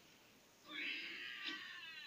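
A cartoon cat character's drawn-out, meow-like vocalization, starting about two-thirds of a second in and sliding down in pitch at the end, played through a television speaker.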